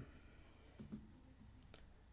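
Near silence with a few faint clicks in the middle: a laptop trackpad being clicked to open a selected file.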